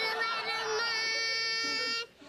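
A young girl singing one long held note, steady in pitch, which breaks off suddenly at the end.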